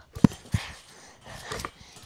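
Two dull thumps about a third of a second apart, a basketball bouncing on a trampoline mat, followed by a child's breathing.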